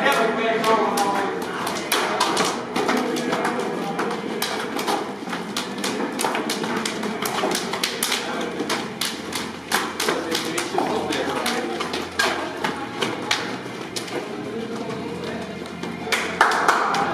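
Rapid, irregular clicking and clacking of many football boots' studs on a hard tunnel floor as a team walks out, over a murmur of voices.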